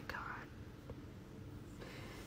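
A woman's breathy, whispered exclamation ("god!"), muffled by a hand held over her mouth, fading within half a second into quiet room tone.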